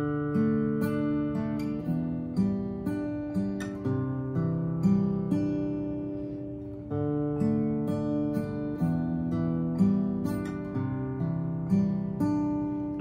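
Acoustic guitar played alone, working through a D, E minor, C chord progression twice. The notes are picked one after another and each chord rings on. The second pass starts about seven seconds in.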